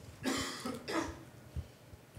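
A person coughing once, briefly, starting about a quarter second in.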